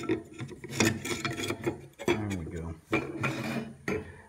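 Wooden hammer handle forced through the centre hole of a steel saw-blade axe head: wood rubbing and scraping against the steel, broken by a few sharp knocks.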